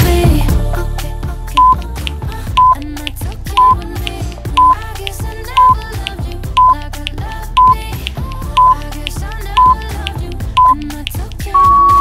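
Workout interval timer beeping out the last seconds of a countdown: ten short, identical beeps, one a second, then one longer beep near the end marking the end of the interval. Background pop music plays under the beeps.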